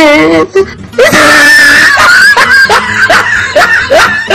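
A shrill, high-pitched scream about a second in, followed by a run of quick rising yelps of laughter, about three a second.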